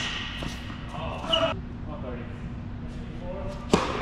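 Tennis rally in an indoor hall: a sharp racket-on-ball strike right at the start and another, the loudest, near the end, with fainter ball hits and bounces between, all echoing in the hall.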